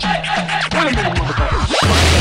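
DJ scratching a record over a hip hop mix, the pitch sweeping down and back up in quick strokes while the deep bass drops out.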